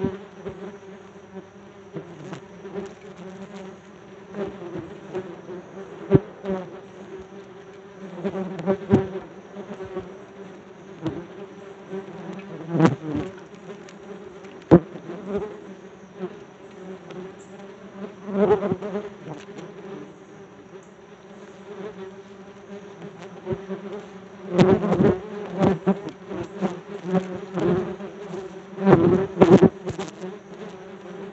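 Yellow jackets buzzing around the phone, a steady insect drone that swells loud each time a wasp flies close past the microphone, several times over. A few sharp clicks are heard as well.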